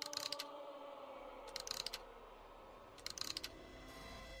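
Three short bursts of rapid mechanical clicking, like a wind-up key or crank being turned, about a second and a half apart, over fading sustained chime-like tones in the backing track.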